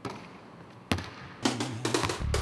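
Two knocks, one as it opens and a sharper one about a second in, from a jump-shot basketball striking the hoop; music with drums comes in about a second and a half in.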